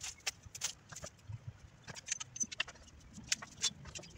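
Dry branches, twigs and leaves crackling and snapping as they are pulled and dragged out of overgrown plants: irregular sharp clicks, several a second.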